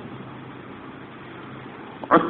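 Steady hiss with a faint low hum: the background noise of the recording.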